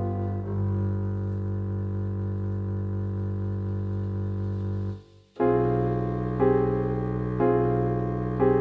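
MuseScore playback of a slow composition for piano and contrabass: a long held chord with a low bass, a brief break about five seconds in, then new chords struck about once a second.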